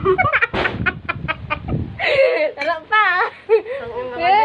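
Young women laughing hard: a quick run of short, cackling laughs about a second in, then higher, wavering laughter.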